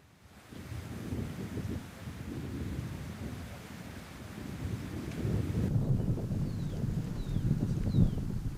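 Wind buffeting the microphone: an uneven low rumble that grows louder after about five seconds, with three short high falling chirps near the end.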